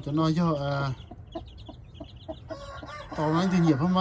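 Black hen clucking in two drawn-out calls, one over the first second and one over the last second.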